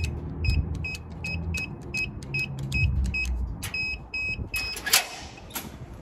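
Rapid electronic beeping, short even beeps about three a second lasting about four seconds, over a low rumble from a motor or wind on the microphone. A sharp click near the end is the loudest moment.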